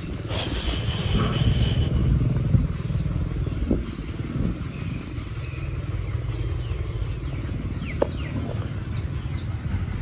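A steady low rumble throughout, with a bird repeatedly giving short, high, falling chirps about once a second.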